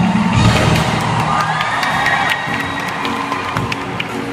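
Loud dance music for a street dance routine with a crowd cheering over it. The music's low beat thins out after about a second and a half, and a long high shout rises from the crowd about a second in.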